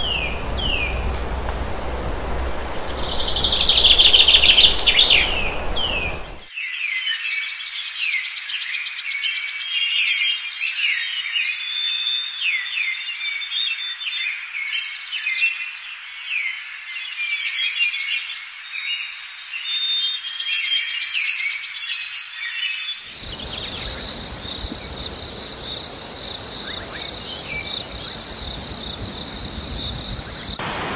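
Forest birds chirping and calling with insects, many short high calls over and over. A louder burst of calls comes about three to five seconds in over a low rumble. The sound changes abruptly twice, near six seconds and again about two-thirds through, when a steady high insect drone sets in.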